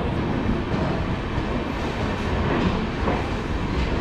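Passenger train rolling slowly into the station, heard from on board: a steady, loud rumble of the moving coaches.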